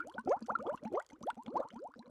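Bubbling-water sound effect: a rapid stream of bubbles, each a short rising blip, growing fainter toward the end.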